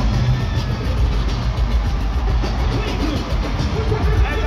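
Live band music with a heavy, dense bass playing through an arena sound system, steady and loud throughout.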